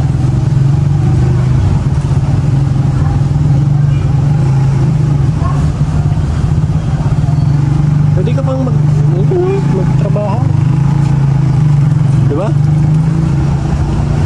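A steady, loud, low engine hum, as of a motor vehicle idling close by, with faint voices in the background about eight seconds in.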